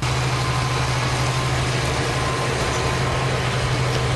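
John Deere tractor's diesel engine running steadily under load as it pulls a reversible plough, with a low, even drone and a faint high whine.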